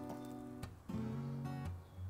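Soft background music on acoustic guitar, with held notes that change to a new chord about a second in.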